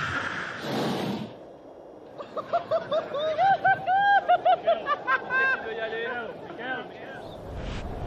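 A person laughing in a quick run of short, high-pitched ha-ha sounds from about two seconds in until near the end, after a brief rush of wind noise at the start.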